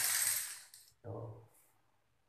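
Metallic clatter lasting about a second from handling at a metal electrical panel, followed by a shorter, duller sound.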